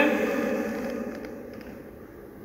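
A man's voice trailing off in a held, fading sound over the first second, then faint room tone.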